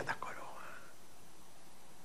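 A man's voice ends a word through a microphone, followed by a faint breathy murmur and then a pause of steady room and sound-system hiss.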